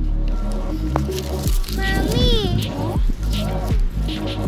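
Background music plays steadily. About two seconds in, a short, high, wavering call rises and falls for about half a second over it.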